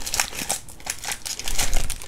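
Foil booster pack wrapper crinkling and crackling as the cards are pulled out of it, with a louder burst of rustling near the end.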